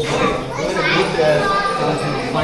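Several people's voices talking and calling, children's voices among them, with a hall-like echo.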